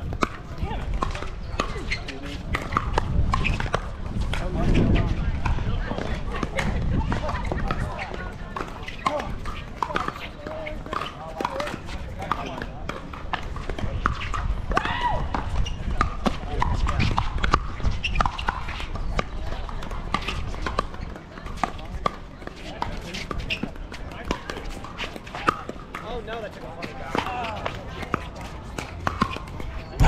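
Pickleball play: paddles striking a plastic pickleball, giving repeated sharp pocks through the rally, over voices in the background.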